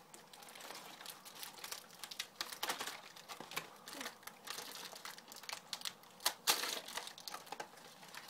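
Packaging crinkling and rustling in irregular crackles as items are unwrapped by hand, loudest about six and a half seconds in.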